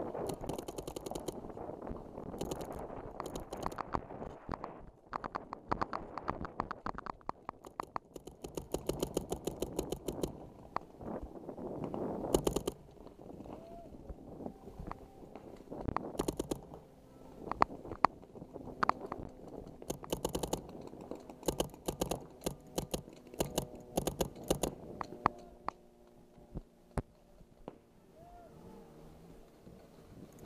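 Paintball markers firing in rapid strings of shots, at the fastest about ten a second, with volleys coming again and again through the stretch.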